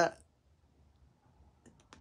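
A pause in a man's speech: the end of a word, then near silence with a few faint small clicks shortly before he speaks again.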